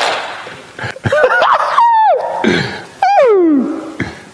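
Voices exclaiming in reaction: a breathy laugh, then drawn-out cries that swoop up and down, ending with one long falling 'ooh' about three seconds in.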